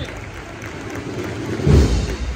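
Procession band music in a quieter stretch, a low hazy lull with faint held tones, then a heavy drum beat near the end.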